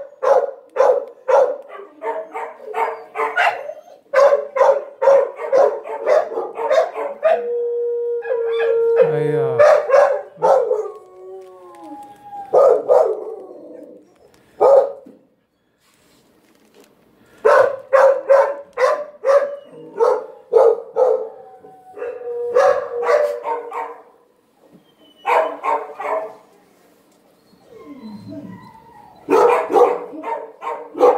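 Dogs barking in shelter kennels: runs of quick, repeated barks, about three a second, broken by short pauses. A long howl rises and falls about eight to eleven seconds in.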